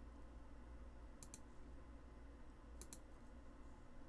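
Computer mouse clicks: two quick pairs of clicks, about a second and a half apart, over a faint low hum.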